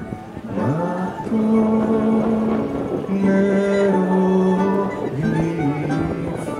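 Live music: a male voice singing long held notes, the first scooping up into pitch, over plucked-string accompaniment.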